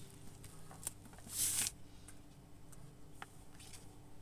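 A cat playing with a catnip toy mouse: scattered soft ticks and scuffs of paws, claws and teeth on the toy and the carpet, with one brief, louder rustle about a second and a half in.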